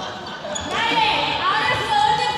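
Sneakers squeaking on a sports-hall floor as players shift between hoops: short rising chirps, with voices in the hall.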